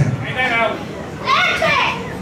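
A woman's unamplified voice yelling an announcement as loud as she can, in two high-pitched shouted phrases, the second louder.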